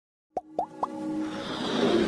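Logo-intro sound effects: three quick pops with a rising blip, starting about a third of a second in, then a musical riser swelling steadily louder.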